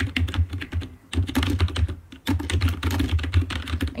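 Typing on a computer keyboard: a fast run of keystrokes, broken by short pauses about one and two seconds in.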